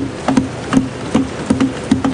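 Members of parliament thumping their wooden desks in approval, a steady rhythm of about two and a half knocks a second from many hands in a large chamber.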